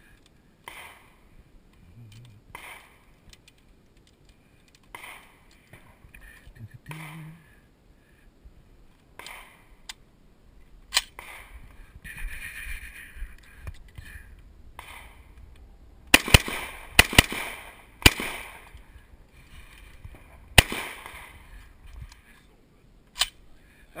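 Rifle shots: a quick string of about five sharp cracks about two-thirds of the way in, then another single shot a couple of seconds later. Fainter knocks and a louder crack come earlier.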